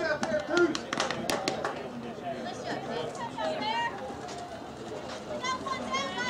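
Players and spectators at a softball game calling out and chattering in high, raised voices, with a quick run of sharp clicks about a second in.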